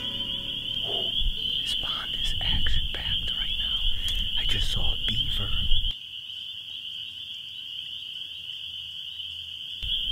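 A steady high-pitched chorus of frogs from the swamp, holding one pitch throughout. For the first six seconds it sits over a low rumble and a few brief voice-like calls, which cut off suddenly about six seconds in, leaving the chorus alone.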